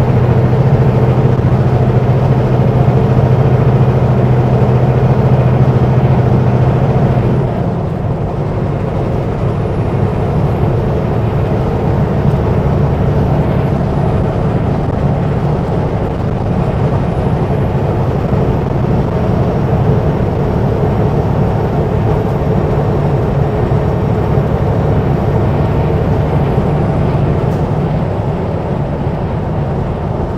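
Kenworth W900L semi-truck's diesel engine running steadily at highway speed, with road and wind noise. About seven seconds in, the engine's steady hum drops and the overall sound gets a little quieter, then carries on evenly.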